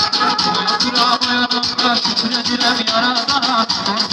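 Live Azerbaijani folk music: a garmon (button accordion) playing a melody over a fast, even drumbeat.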